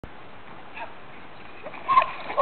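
A person's voice gives a short, high-pitched cry near the end, over a steady hiss, with a faint brief vocal sound a little under a second in.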